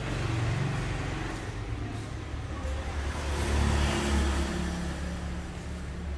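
An engine running with a low, steady hum that grows to its loudest about three and a half seconds in and then eases off.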